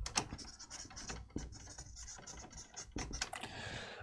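Marker pen writing a word on flip-chart paper: an irregular run of short, faint strokes of the pen tip on the paper.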